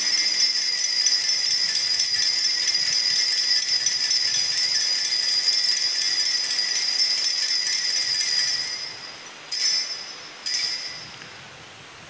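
Cluster of altar (sanctus) bells shaken continuously at the elevation of the chalice after the consecration words. The ringing holds steady for about nine seconds, then dies away, with two short shakes near the end.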